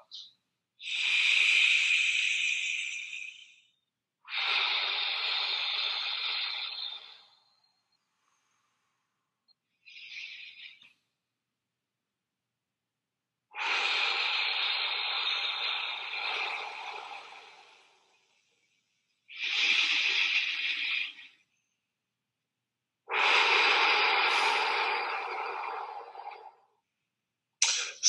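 A man taking maximal deep breaths: a series of long, noisy rushes of air drawn in and blown out, each a few seconds long with short pauses between, the breaths tailing off as the air runs out.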